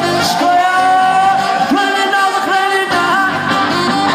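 Live band music with singing, electric guitar and drums. It opens on a long held high note that lasts about the first two seconds, then moves into shorter notes.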